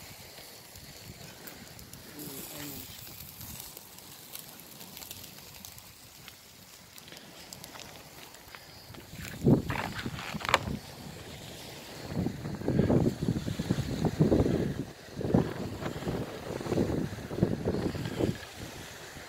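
Faint outdoor hush for the first half. Then, from about halfway, wind buffets the microphone in irregular loud gusts, mixed with indistinct, muffled voices.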